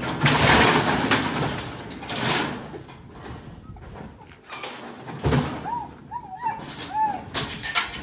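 Metal livestock squeeze chute rattling and clanking, then a blue heeler whining in about five short, arching whimpers a little past the middle, followed by more sharp metal clatter near the end.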